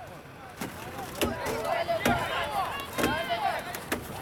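Several voices calling and shouting at once, overlapping one another, with a few sharp knocks about once a second.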